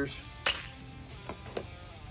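Small bagged parts being handled in a cardboard box: one sharp packaging crinkle about half a second in, then two light clicks. Guitar music plays underneath.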